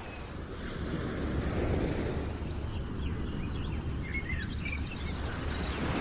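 Outdoor street ambience: a steady low rumble of road traffic, with small birds chirping and trilling in the second half.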